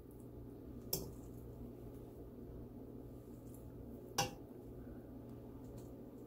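A metal fork clinks twice against the side of a metal pot while turning cooked rice, about a second in and again about four seconds in, over a faint steady hum.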